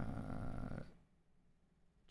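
A man's low, creaky, drawn-out murmur as he hesitates mid-sentence, stopping about a second in.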